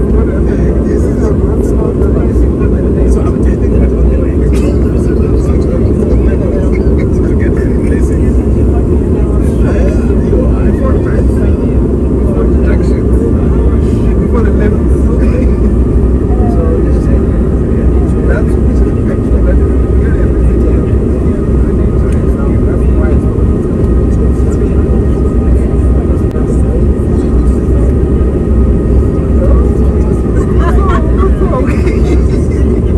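Steady, loud cabin noise of an airliner in flight, a constant deep rumble of engines and rushing air, with indistinct passenger voices in the background.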